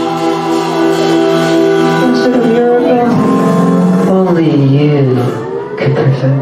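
Live band playing a long held chord on Hammond organ, electric guitars and bass, with notes sliding down and back up in pitch from about three seconds in; the sound dips and pulses near the end.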